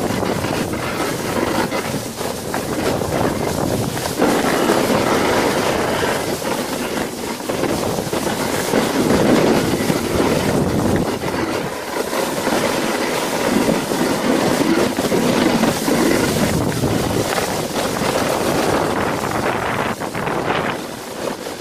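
Sledge sliding fast down a snow run: a continuous rushing hiss of the runners on the snow mixed with wind on the microphone, swelling and easing and getting louder about four seconds in.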